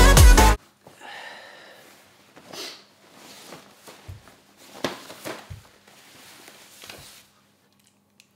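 Electronic background music with a beat cuts off abruptly about half a second in. After that, only faint rustling and a few soft clicks and knocks as a person shifts about and handles clothing and a small snack packet, with a faint hum in the room.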